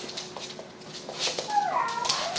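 A dog whining, a high-pitched whimper that starts about a second and a half in, after a few faint clicks.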